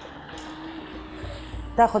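Chicken halves sizzling faintly in hot oil in a grill pan, with a faint steady low hum in the middle; a woman starts speaking near the end.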